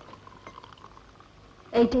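Faint trickle of liquid poured from a small bottle into a glass over a low soundtrack hum. A woman speaks one short word near the end.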